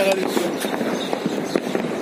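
Fireworks and firecrackers going off: a rapid, irregular crackle of sharp pops, with people's voices in the background.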